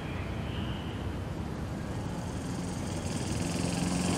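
Small motor scooter engine approaching, its hum coming in about three seconds in and growing louder, over a steady low background rumble.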